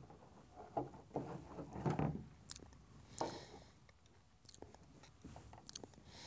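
Faint handling sounds of a leather headstall's bit ends and a steel bit: scattered short rustles and creaks of leather with small clicks.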